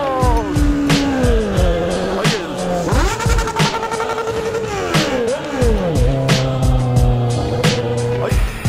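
Music with a steady beat over a sport motorcycle's engine, its pitch falling as the bike slows and rising again about three seconds in.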